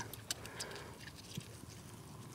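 Quiet handling noise: a few faint, brief clicks as gloved hands dab gauze on a rooster's foot, over a low background.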